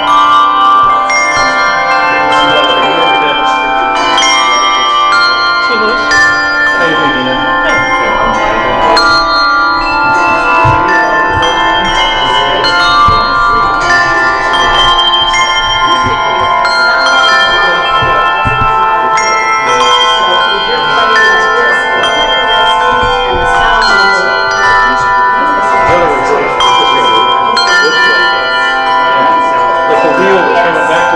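A room full of handbells rung together by a group of beginners practising the ringing stroke, each ringer at their own pace. The strikes come at irregular moments and overlap into a continuous wash of ringing tones at many pitches.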